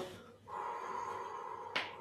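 A person's long, controlled breath out through the mouth, a soft breathy 'hoo', as part of a qigong breathing exercise. It is followed near the end by a quick, short breath in.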